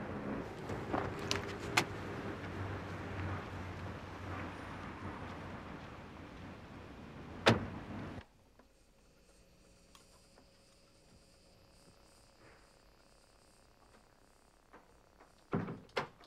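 Outdoor wind noise with a few small clicks, then one loud sharp thunk of a car door shutting about seven and a half seconds in. After that comes near silence with a faint hum, and a soft thump just before the end.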